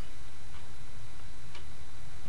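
Steady background hiss with faint ticking, in a pause between spoken words.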